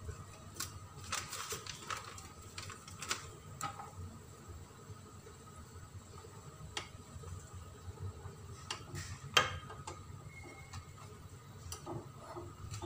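A utensil clinking and scraping against an enamel cooking pot as instant noodles are stirred, in scattered light clicks with one louder knock about nine seconds in, over a steady low hum.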